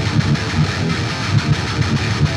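Distorted electric guitar played through a Monomyth-modded Marshall Silver Jubilee tube amp head and a 4x12 cabinet: a fast run of short, repeated low notes.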